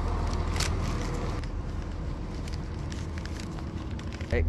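Low steady drone of a Class 170 Turbostar diesel multiple unit's underfloor diesel engines idling while it stands at the platform, with a few faint clicks and knocks.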